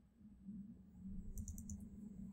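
Faint clicking at a computer: a quick run of about five light clicks about one and a half seconds in, over a faint low hum.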